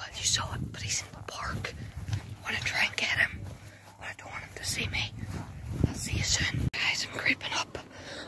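A boy whispering close to the microphone in short phrases, over a low rumble on the mic.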